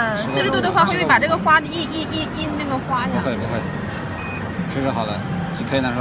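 Voices talking against background crowd chatter, with one short high beep about four seconds in.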